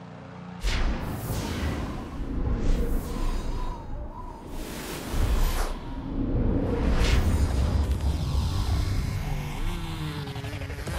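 Sound-designed graphic stinger: several swooshing whooshes over a deep rumbling bed and music, starting about half a second in.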